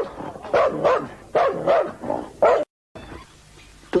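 Dog barking several times in quick succession, four or five short barks in the first two and a half seconds, after which the sound briefly cuts out completely.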